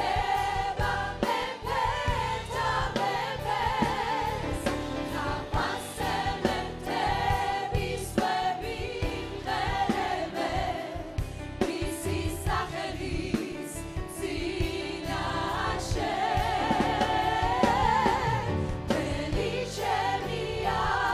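A church choir of mostly women's voices singing a worship song through microphones, over instrumental accompaniment.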